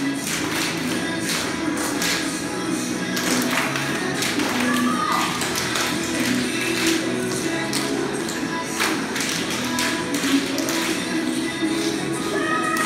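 A group of tap dancers' metal-plated shoes striking a wooden floor in quick, ragged clusters of clicks, over recorded music with a steady beat.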